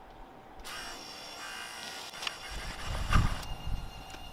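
Wiper motors of a homemade solar tracker starting about half a second in and running with a steady whine, driving the lead screws that swing the lens frame toward the sun. There is a clunk about three seconds in.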